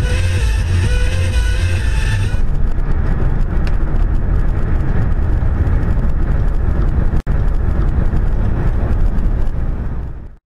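Steady road and engine rumble of a car driving at speed, heard from inside the cabin, heavy in the low end. Music plays over it for the first two seconds or so, then stops; the sound drops out for an instant a little after seven seconds.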